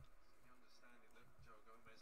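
Near silence with a faint voice in the background.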